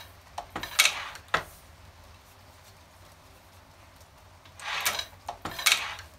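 1922 Golding Official No. 4 hand-lever platen press being worked: the cast-iron mechanism clatters and clicks as the lever is pulled through an impression, in two bursts about four seconds apart.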